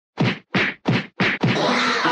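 Four quick punch and slap hits of a staged beating, about a third of a second apart. Background music starts near the end.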